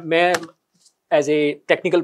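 Speech only: a man talking, broken by a short pause about half a second in.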